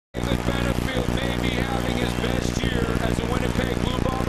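A voice over a steady, low, droning hum.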